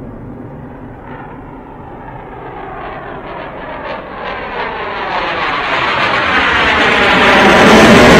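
Eurofighter Typhoon jet taking off on afterburner, its twin EJ200 engines growing steadily louder toward the end with a sweeping, phasing rush.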